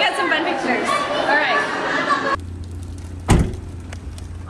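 Several people talking at once in a large room, cut off abruptly; then a steady low hum and, a little over three seconds in, a single loud thump of a car door being shut.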